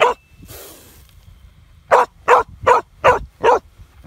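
A dog barking at a cobra: one bark at the very start, then a quick run of five sharp barks, a little over two a second, in the second half.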